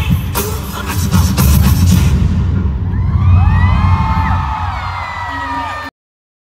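Live concert music with sharp, heavy drum hits that stop about two seconds in, followed by a crowd cheering and whooping over a low rumble. The sound cuts off abruptly just before the end.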